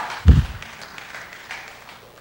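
A single dull, deep thump about a third of a second in, then faint noise that fades away.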